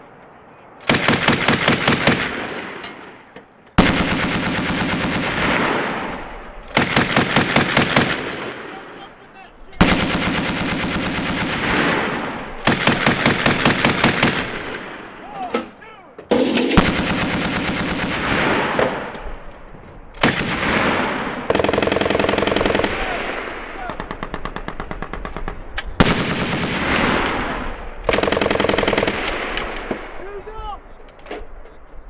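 Mk 19 40 mm belt-fed automatic grenade launchers firing in repeated short bursts, about nine of them, each a rapid string of shots a second or two long that dies away in a long echo.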